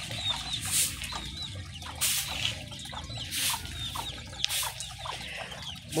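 Chickens clucking, with short chirping calls and brief hissy bursts over a steady low rumble.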